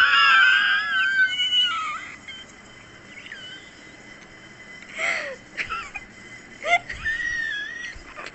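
High-pitched, wheezy squealing laughter for about two seconds, then a couple of short vocal sounds and a thin high-pitched note near the end.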